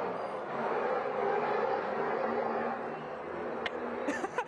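Steady background din of a busy eatery open to the street, with no speech, and a single short click near the end.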